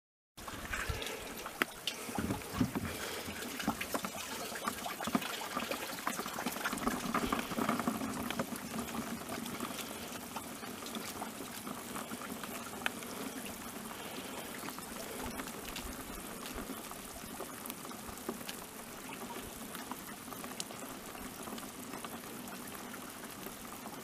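Water and whitebait pouring from the end of a whitebait net into a plastic tub, a steady splashing trickle. It is louder and more uneven for the first several seconds, then settles into a steadier stream.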